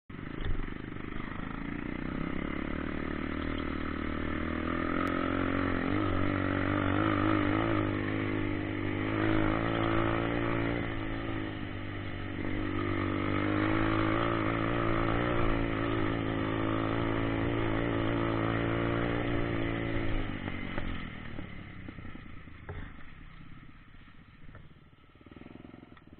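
Dirt bike engine running under way, its note rising and falling with the throttle for about twenty seconds. It then eases off and goes much quieter as the bike slows.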